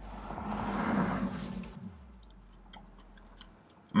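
A bite into a chocolate-iced glazed doughnut topped with mini Reese's Pieces, then chewing. A soft crunching swell peaks about a second in and fades, followed by faint chewing clicks.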